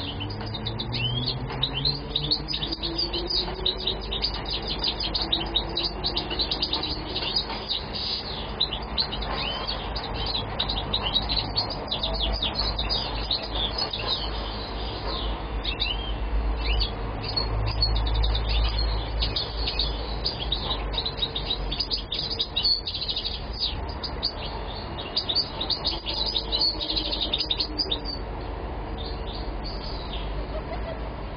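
European goldfinch singing continuously, a fast, unbroken run of twittering chirps and trills, over a low rumble that grows stronger in the middle.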